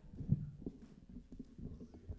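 Irregular low thumps and knocks, the loudest about a third of a second in.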